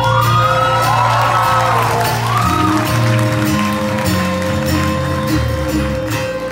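Live rock band playing an instrumental passage on electric guitar, acoustic guitar and bass, with a lead line bending up and down in pitch in the first half.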